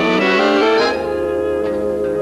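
Swing big band playing, brass and saxophones together: a quick rising phrase, then a held chord from about a second in.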